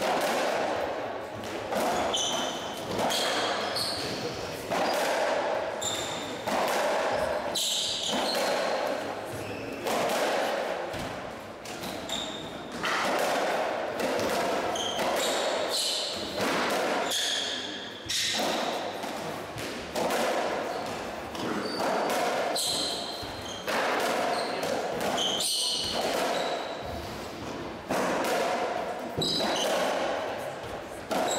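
Racketball rally in a squash court: the hollow rubber ball smacking off the rackets, the walls and the floor about once a second, each hit ringing around the enclosed court, with short shoe squeaks on the wooden floor.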